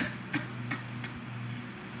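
A few light clicks, about a third of a second apart, over a steady low hum.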